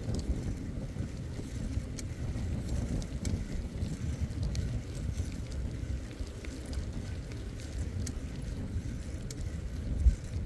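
Wind rumbling on the microphone of a bicycle riding along a paved trail, with the tyre rolling on the surface and scattered light clicks throughout.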